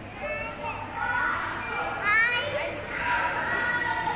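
A small child squealing and babbling playfully in a high voice, with a quick rising squeal about two seconds in.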